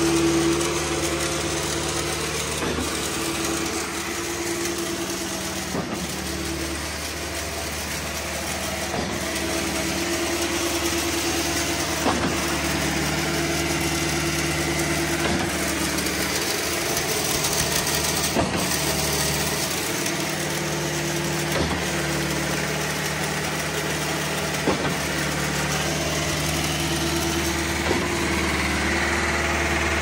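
Schwing SP500 trailer concrete pump running under a pressure test: its engine and hydraulic pump run steadily, with a sharp knock about every three seconds as the pump changes stroke.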